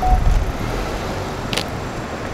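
Steady outdoor street noise with a low traffic rumble that is strongest at the start. There is one sharp click about one and a half seconds in.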